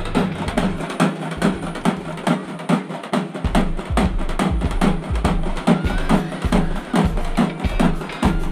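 Music driven by fast, steady drumming, about four or five strokes a second, over a heavy bass.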